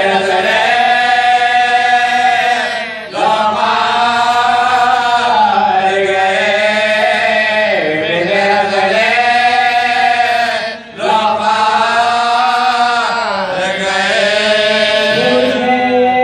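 Men chanting an Urdu noha, a Shia lament: a lead reciter at the microphone with others joining in, with no instruments. The singing moves in long held melodic phrases that fall in pitch at their ends, with short breaks for breath about three seconds in and again about eleven seconds in.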